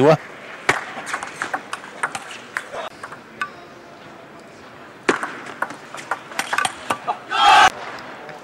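Table tennis rallies: quick, sharp clicks of the celluloid ball off the rubber bats and the table, in two runs with a short lull between. Near the end comes a brief loud burst of voice, a shout or cheer as a point is won.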